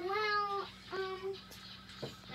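Two meows: a longer one at the start that falls slightly in pitch, then a short one about a second in.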